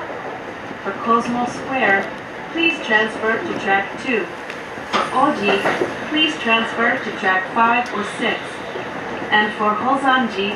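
An onboard train announcement voice speaking over the steady running noise of an electric commuter train.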